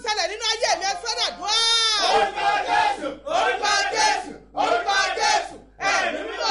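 A woman shouting fervent prayer in loud phrases with short breaks, rising to a long high cry about one and a half seconds in.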